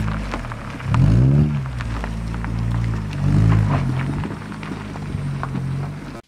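A car engine rising and falling in pitch about a second in as the car pulls away up a rough gravel track, with scattered crunches from the tyres. Steady background music runs under it.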